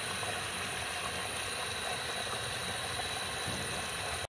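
Steady, even hiss with a faint constant high whine, unchanging throughout with no distinct knocks or clicks.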